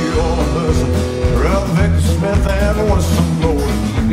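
Live band playing a country rock-and-roll song on upright double bass, drum kit, acoustic and electric guitars, with a steady bass pulse.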